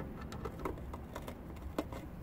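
Hand screwdriver turning a screw into a soft-top latch, giving a run of small, irregular clicks and scrapes, with one sharper click near the end.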